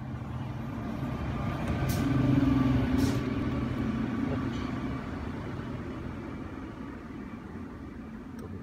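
Low mechanical engine-like hum that swells to a peak about two to three seconds in and then slowly fades, with two short sharp noises about a second apart near the peak.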